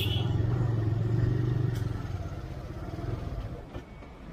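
Motorcycle engine running as the bike rolls slowly at low speed, a steady low drone that weakens after about two seconds as the bike slows to pull in.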